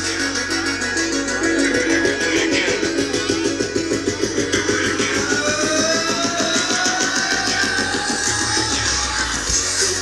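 Live synth-pop band with drums, bass and keyboards playing through the stage PA, heard from the crowd: a steady driving beat, with a tone rising slowly in pitch through the second half.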